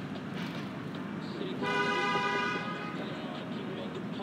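A vehicle horn sounds once, a steady single-pitched blast of about a second starting about one and a half seconds in, over the constant noise of street traffic.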